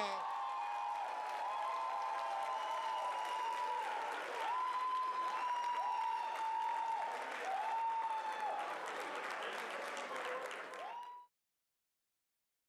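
Audience applauding, with long held whoops from the crowd over the clapping, several of them dropping in pitch at the end. The sound cuts off suddenly near the end.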